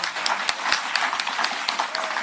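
Audience applauding, with many separate hand claps overlapping.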